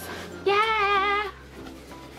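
A woman's singing voice holds one long note with a wavering vibrato, from about half a second in until just past one second. After the note only faint, steady background music remains.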